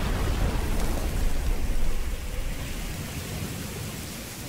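Steady rain with a low thunder rumble that builds a little before halfway, then fades away over the second half.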